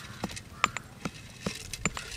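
Stone pestle pounding almonds in a stone mortar: five sharp, even knocks, about two and a half a second, as the nuts are crushed.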